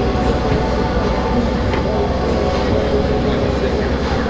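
A vehicle engine idling with a steady, deep rumble.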